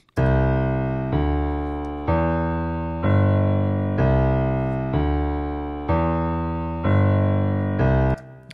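A keyboard bass line played alone: the four notes C, D, E and then a lower G, each struck and left to fade, about one note a second, the four-note pattern heard twice.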